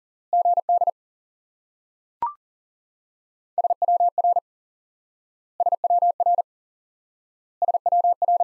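Morse code sent as a keyed single-pitch tone at 40 wpm. First one group repeats the element just spoken, "good", then a short higher courtesy beep sounds about two seconds in. After that the next element, SWR, is sent three times, one identical group every two seconds.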